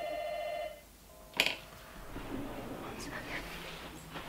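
Electronic doorbell ringing: a buzzing, slightly warbling tone for under a second, then a shorter tone and a sharp knock, followed by quiet rustling movement.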